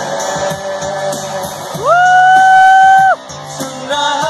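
Live band music of guitars and keyboard over a steady beat, between sung lines. Just under two seconds in, a single voice scoops up into a loud, high held note like a shout or whoop, held about a second before cutting off sharply.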